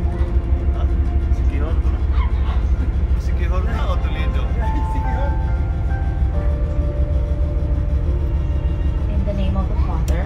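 Steady low rumble of a passenger ferry's engines, heard on deck, with voices of other passengers over it.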